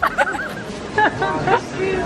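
People talking over a background of crowd chatter, with music playing underneath.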